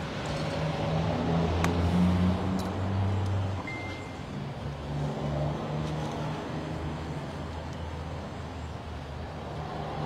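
Road traffic: a low, steady motor-vehicle engine hum, louder for the first few seconds and then running on evenly, with a few faint clicks.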